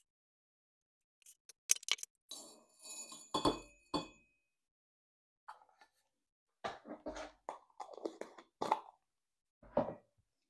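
Small ss10 hot-fix rhinestones clicking and clinking in irregular bursts as loose stones are gathered up off the template, with rustling handling noise between the bursts.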